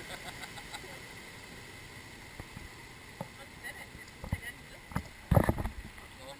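Rushing water around a river rapids raft boat, with wind on the microphone and scattered knocks and splashes as the boat moves through the channel; the loudest is a heavy thump with a splash a little past five seconds in.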